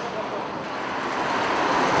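Road traffic on a city street: a steady wash of passing vehicles that grows gradually louder toward the end.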